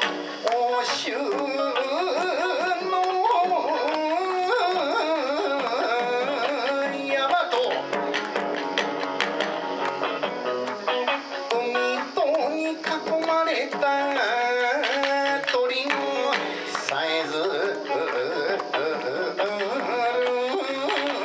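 Live Kawachi ondo music: electric guitar and a standing taiko drum accompany a wavering, ornamented sung melody line.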